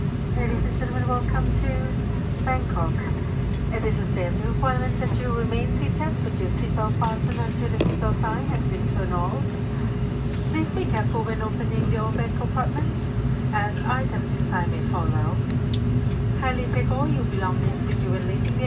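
Steady low rumble of an Airbus A330 cabin on the ground after landing, with a cabin PA announcement in a language other than English running over it.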